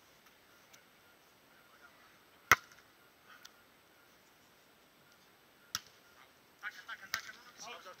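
A volleyball struck by hand in a beach volleyball rally: one loud, sharp slap about two and a half seconds in, then fainter hits near six and seven seconds.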